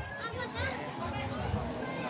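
Children's high voices chattering and calling close by, over the steady murmur of a seated crowd.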